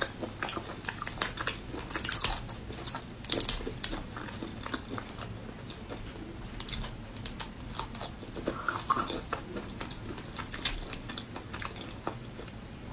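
Raw marinated shrimp being pulled apart and peeled by hand, the shells giving irregular crackles and clicks, mixed with close-up chewing.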